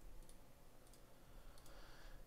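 A few faint computer mouse clicks over near-silent room tone, as a browser tab is clicked to switch pages.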